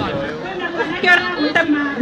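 Speech: people talking close by amid crowd chatter.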